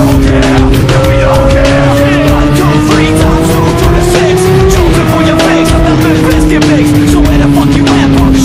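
Music with a steady beat laid over a motorcycle engine running at speed. The engine note climbs slowly, drops sharply about five seconds in, then falls away slowly.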